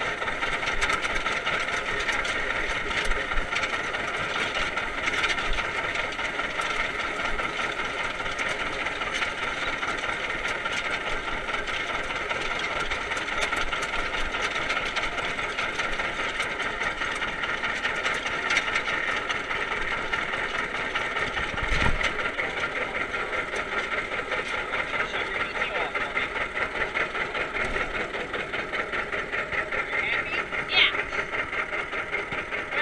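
Vintage tractor engine running steadily under way through a hayfield, with a fine even pulse from its firing. One brief thump about two-thirds of the way through.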